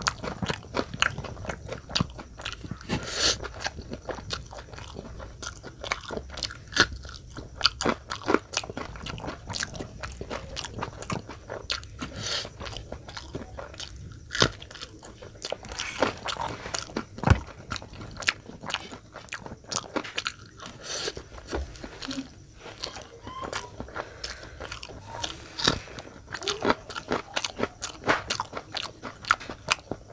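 Close-miked mouth sounds of a person eating instant noodles and biting raw green chillies: steady chewing broken by many irregular crunches and clicks.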